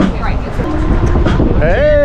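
Scattered chatter from a few people over a steady low rumble; near the end one voice breaks into a long, held, even-pitched call of greeting.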